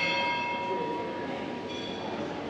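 A bell struck once, ringing with a long steady tone while its higher overtones fade within about a second, then a second, lighter strike near the end.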